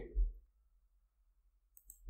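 A spoken word trails off, then near silence, broken by a faint, brief click just before the end.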